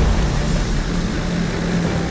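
Aircraft engines running: a loud, steady low rumble with a hum, which swells in just before.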